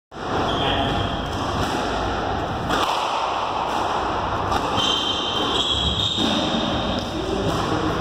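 Squash rally: the ball is struck by rackets and knocks off the court walls, giving short thuds over a steady background noise with voices.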